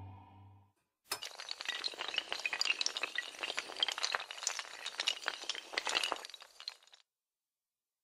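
Sound effect of a long chain of dominoes toppling: a fast, dense clatter of many small clicks. It starts about a second in and stops about a second before the end. A low held tone fades out just before it.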